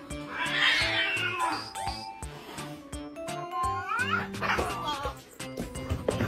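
Cats fighting, with yowling cries that rise in pitch about four seconds in, over background music with a steady beat.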